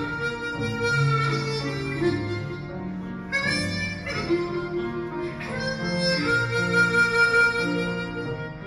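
Hohner 280-C Chromonica chromatic harmonica playing a slow melody in long held notes, accompanied by a grand piano. The melody breaks briefly a little over three seconds in, then a new phrase begins.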